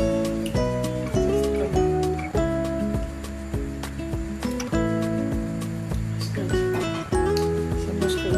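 Background music with a beat and held, changing notes.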